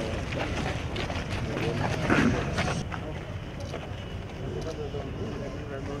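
Indistinct chatter of several people outdoors, with one voice briefly louder about two seconds in, over a steady low rumble of wind on the microphone.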